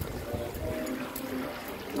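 Water trickling and spilling over the edge of a cascade water feature, with faint voices and music in the background.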